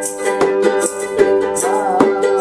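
Several ukuleles strummed together in a steady rhythm, with a man singing along.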